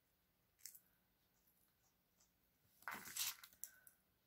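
Mostly near silence, with a faint click about half a second in and a short burst of small handling noises about three seconds in: two pairs of small pliers working a metal jump ring.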